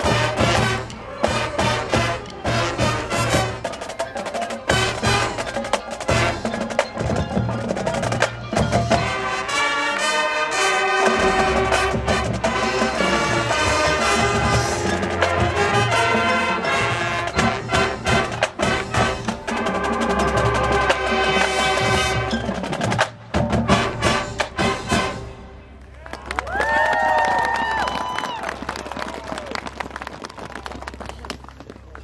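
High school marching band playing, brass section over drumline, with frequent sharp drum hits. Near the end the music breaks off briefly and resumes more softly with held tones.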